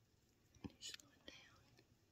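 Near silence broken by a soft tap and then two short breathy hisses about a second in, like a person whispering under their breath.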